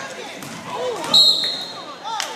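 A referee's whistle: one short, sharp blast a little past halfway, the loudest sound, as play stops with players down on the floor. Spectators' voices call out around it.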